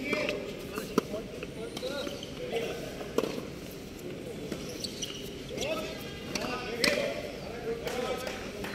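Tennis ball being hit by rackets and bouncing on a hard court during a rally: a few sharp pops a couple of seconds apart, the loudest near the end, over indistinct chatter of voices.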